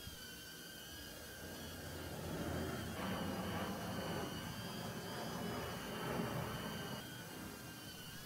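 Faint, steady high whine of a small quadcopter's propellers while it hovers. A low rumble swells in the middle and fades again.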